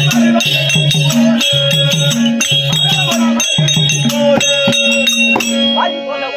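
Therukoothu folk-theatre accompaniment: a harmonium plays a repeating melodic figure about once a second over a held drone, with a steady jingling, rattling percussion rhythm.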